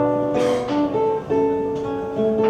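Classical guitar played solo: a few plucked chords, each struck about every half second and left ringing.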